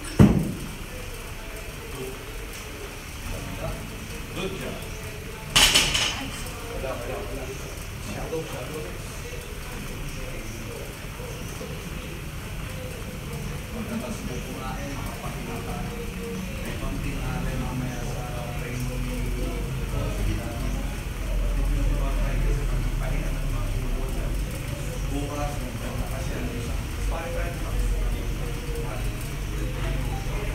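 A loaded barbell set down on the rubber gym floor after a deadlift rep: one heavy thud at the very start. A second, shorter sharp noise comes about six seconds in. Indistinct voices carry on underneath.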